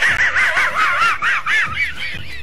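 Muttley, the Hanna-Barbera cartoon dog, snickering: his trademark laugh, a fast run of high-pitched rising-and-falling chuckles, about five a second, fading near the end.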